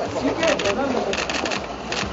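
Camera shutters clicking in quick runs of several clicks, over people talking.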